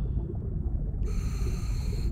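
Cartoon underwater ambience: a steady low rumble, with one breath through a scuba regulator heard as a hiss lasting about a second, starting about a second in.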